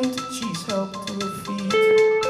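Indie rock band playing live, electric guitar to the fore, with held notes that shift in pitch over a steady pulse.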